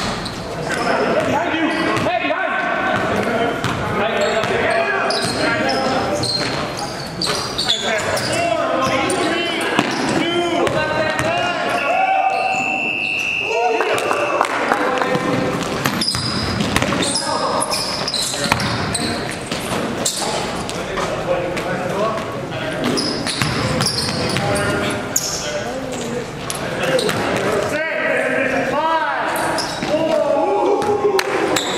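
Basketball game audio in a gym hall: a ball bouncing on the court and players' voices calling out, with a held high-pitched tone for about two seconds halfway through.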